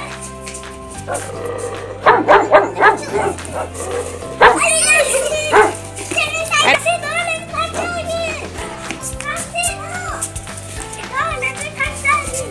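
A Doberman Pinscher puppy barking several times in quick succession about two seconds in, over background music with a steady stepping bass line.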